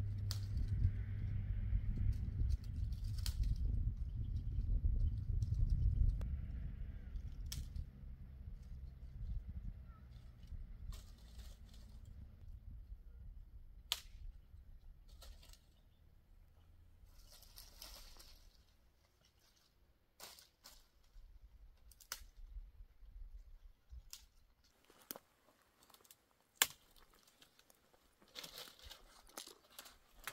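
Low rumble of wind buffeting the microphone for the first several seconds, fading out, then scattered snaps, cracks and rustles of dry twigs, brush and fallen leaves being handled and stepped on.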